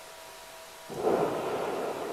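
Rumble of a pyroclastic flow surging down the flank of Merapi, a stratovolcano. It starts suddenly about a second in and carries on as a loud, noisy rush that slowly eases.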